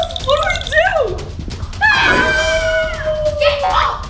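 Shrieks of fright in the first second, then a long howl about two seconds in that settles onto a steady note before stopping, a mock werewolf howl.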